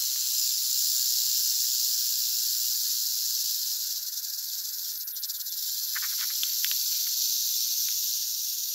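Prairie rattlesnake rattling continuously, a steady high-pitched buzz from its tail. It is the defensive warning rattle of a disturbed snake.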